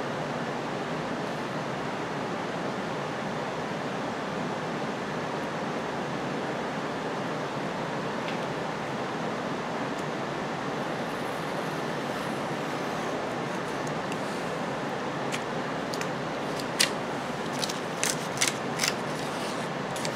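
A steady background whir, with a few short, separate scratches in the last five seconds from a razor-blade knife cutting a paper pattern along a metal ruler.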